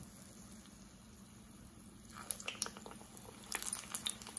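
Battered cauliflower fritters sizzling faintly in hot deep-frying oil. About two seconds in the crackling picks up, as another batter-coated floret goes into the oil.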